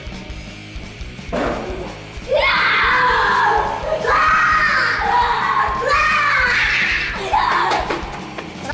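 A person screaming loudly in long, high-pitched cries, four or five in a row, beginning about a second and a half in, over background music.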